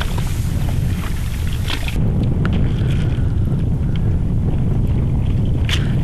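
Wind buffeting the microphone in a steady low rumble, with a hiss from a wooden mud sledge (neolbae) sliding over wet tidal mud for the first two seconds.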